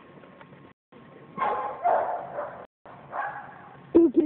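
Chocolate Labrador retriever barking three times while playing ball.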